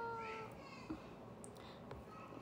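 A young woman's voice holding a long, steady, high-pitched vowel as she draws out 'arigatooo' ('thank you'). It trails off about half a second in, leaving quiet room tone with a faint click.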